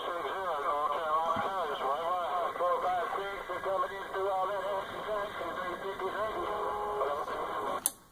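A distant station's voice coming in over an AM CB radio's speaker on 27.285 MHz. It sounds thin and narrow over a steady background hiss, fading out just before the end.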